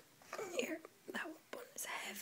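A quiet, whispered voice in a few short bits of sound.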